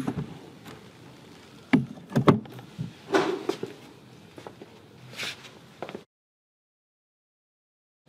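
Several sharp knocks and clattering thuds, with a couple of softer rushing sounds, before the sound cuts off to dead silence about six seconds in.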